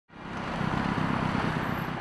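City street traffic noise: a steady rush of passing cars, fading in over the first half second.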